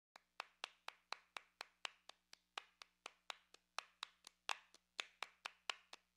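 A steady run of sharp clicks, about four a second, over a faint low hum.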